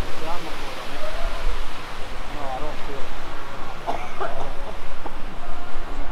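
Steady rushing outdoor noise with a low rumble, and a few snatches of people talking in the background.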